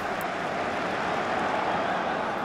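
A steady, even rushing noise with no distinct strokes or tones, strongest in the middle range.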